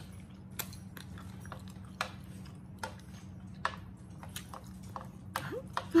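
Close-miked mouth sounds of a person eating noodles: scattered wet clicks and smacks of chewing over a steady low hum, ending in a short laugh.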